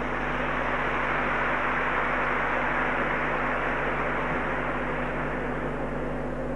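A large audience laughing and clapping, a dense wash of crowd noise that swells in the first second or two and slowly eases off.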